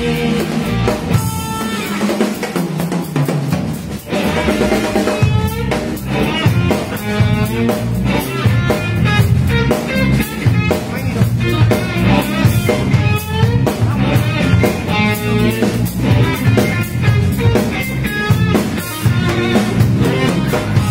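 Live band playing a jazz-funk groove: electric guitar soloing over drum kit and bass guitar. The bass and kick drum drop out for a moment about two seconds in, then the full band comes back.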